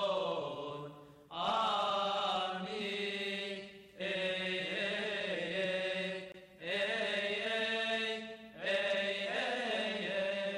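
Coptic Orthodox liturgical chant: a voice sings a rising and falling line in phrases of about two seconds each, with short breaks between them.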